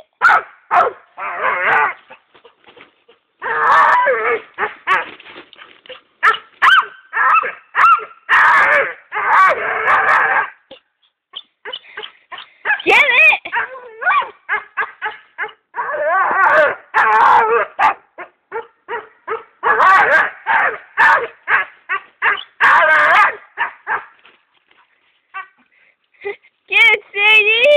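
Dog barking and whining in repeated runs of short, pitched calls, some drawn out, with brief pauses between runs, worked up while trying to reach a vine hanging out of reach in a tree.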